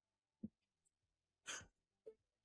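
Near silence: a pause between spoken lines, broken only by a faint tick about half a second in and a brief, faint breath-like puff near the middle.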